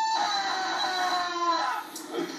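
A man wailing in two long, drawn-out cries that each slide slightly down in pitch, heard through a television's speaker. He is high on the synthetic drug called bath salts.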